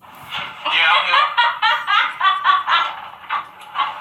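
People laughing hard, a long run of quick, rhythmic laughter pulses.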